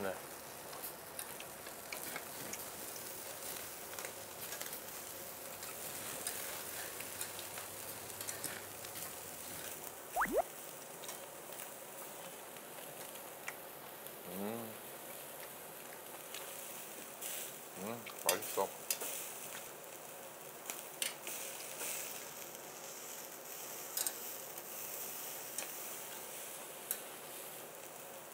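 Beef sizzling steadily on a stainless-steel tabletop barbecue grill, with occasional small clicks and clinks.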